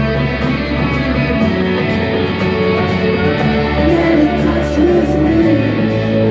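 A live rock band playing loud, with electric guitars to the fore over bass and drums, cymbals ticking steadily on top. A bending guitar line rises out of the mix about four seconds in.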